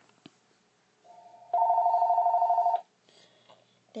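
Electronic warbling ring tone, two tones trilling rapidly, starting softly about a second in, loud for about a second and a half, then stopping. Two faint clicks at the start.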